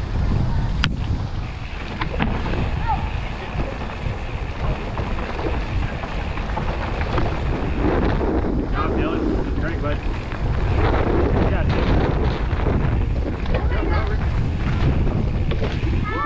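Wind buffeting a helmet-mounted camera's microphone as a mountain bike rolls along a dirt singletrack, with steady trail noise underneath. There is a sharp click about a second in and another about two seconds in.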